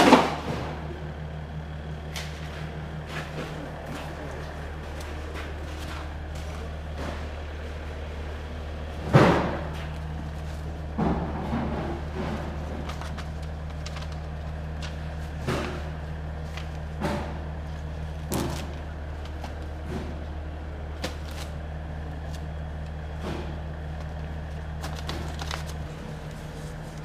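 A steady low machine hum, with a few knocks and thuds from plastic fish tubs and pallets being handled. The loudest knocks come at the start and about nine seconds in.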